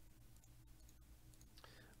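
Near silence: a faint low hum with a few soft computer-mouse clicks.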